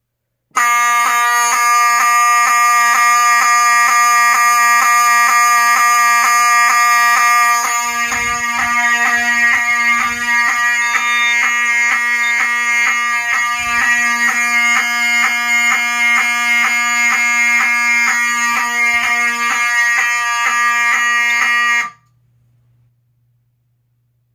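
Ellenco 45S-HSD-24 fire alarm horn strobe, a rebranded Wheelock 7002T, sounding its horn loudly and continuously after a manual pull station is pulled. It cuts off suddenly near the end.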